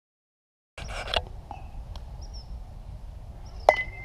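After a moment of silence, outdoor field noise with wind on the microphone comes in. Near the end, a youth baseball bat cracks a ball off a batting tee, with a short ring after the hit.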